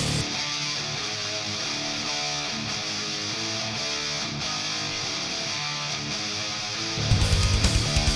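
Schecter Sun Valley FR Shredder electric guitar through a Mesa amp, played alone as a run of picked notes with no bass or drums. About seven seconds in, the full band mix comes back in, louder, with pulsing drums and bass under the guitar.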